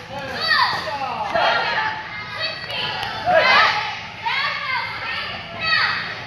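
Many children's voices calling out and chattering at once, high-pitched and overlapping, echoing in a large hall.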